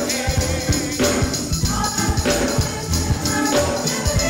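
Gospel music: a choir singing with band accompaniment over a steady beat.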